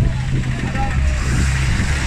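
Roadside traffic: a vehicle engine's steady low hum, with a passing vehicle's rushing noise building in the second half, and people's voices in the background.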